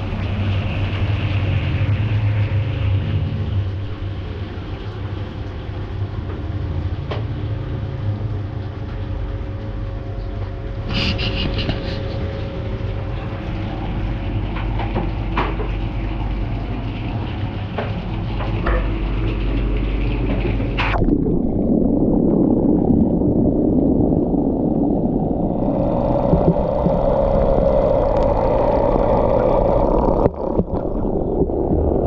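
Dielectric coolant boiling in a two-phase immersion cooling tank around overclocked Whatsminer M30S++ bitcoin miners, with a steady low hum. About four seconds in the hum eases as the miners' power is cut and the boiling dies down, with a few sharp clicks. In the last third a louder, duller rumbling noise takes over.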